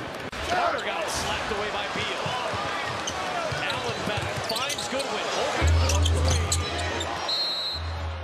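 Arena game sound of an NBA basketball game: crowd noise and voices with a basketball being dribbled on the hardwood court.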